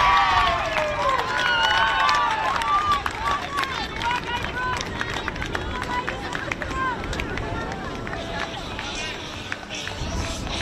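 Women players and spectators shouting and cheering at a goal, many high voices overlapping, loudest in the first few seconds and then dying down to scattered calls.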